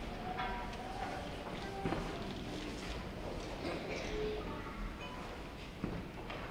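Elementary school concert band playing softly: short, scattered held notes with a few sharp taps, over a faint murmur of voices.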